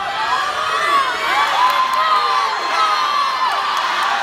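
Crowd of spectators cheering and yelling for swimmers during a race, many high voices overlapping; it gets louder right at the start and stays loud.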